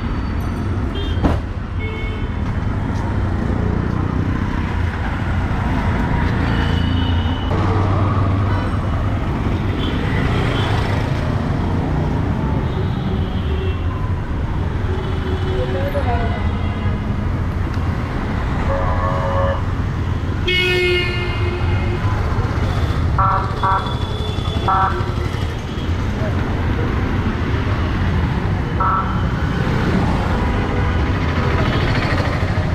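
Busy city street traffic: a steady rumble of engines and tyres, with several short vehicle horn toots in the second half.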